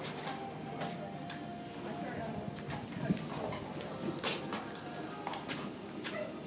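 Horse's hooves on the sand of an indoor arena during a show-jumping round: irregular knocks and thuds with a reverberant hall sound, the loudest about three and four seconds in, over faint background voices.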